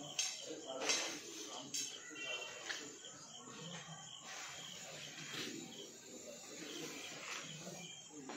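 Low, indistinct voices murmuring, broken by a few short, sudden hissy noises, three of them close together in the first two seconds and one more past the middle.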